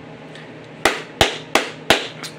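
A man clapping his hands four times in quick, even succession, about three claps a second.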